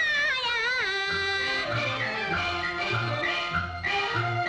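Female pingju opera singing from a 1957 film soundtrack: a high, sliding, ornamented vocal phrase that ends about a second and a half in. The instrumental accompaniment then plays on alone in a run of short notes over a low bass line.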